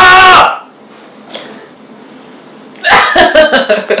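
A short loud vocal exclamation at the start, then a quiet pause, then laughter breaking out about three seconds in.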